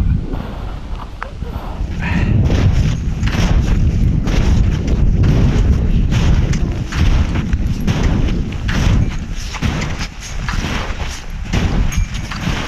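Footsteps crunching through deep snow at a steady walking pace, with trekking poles planted alongside, over a low rumble of wind buffeting the microphone.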